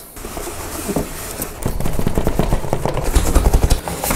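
Cardboard boxes scraping and rubbing against each other as small boxed filament spools are pulled out of a cardboard shipping carton, with a rapid irregular run of knocks and a heavier rumble in the second half.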